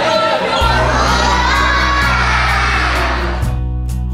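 A group of teenage boys cheering and shouting together over background music with a steady bass. The crowd noise cuts off about three and a half seconds in, leaving only the music with strummed guitar.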